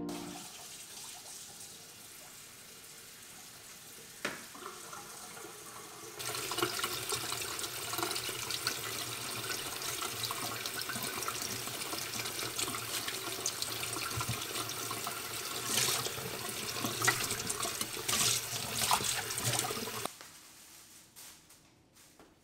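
Kitchen tap running into a stainless steel bowl of napa cabbage leaves and enoki mushrooms in the sink, water splashing over the vegetables as they are rinsed. The rush starts about six seconds in after a single click and is shut off abruptly about two seconds before the end.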